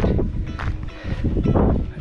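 Wind buffeting the camera microphone, a dense low rumble, with soft background music underneath.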